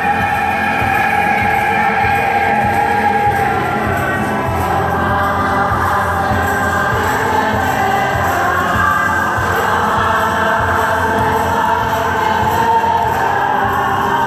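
A choir singing a song over a steady beat.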